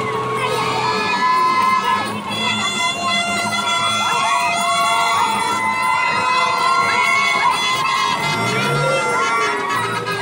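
A street crowd shouting and cheering over loud music, with long held notes and sliding melodic phrases.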